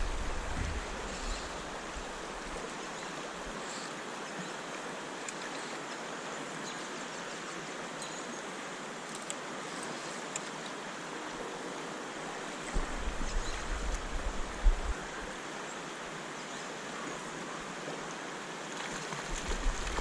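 Creek water rushing steadily past, an even wash of sound. A low rumble comes in about two-thirds of the way through and again just before the end.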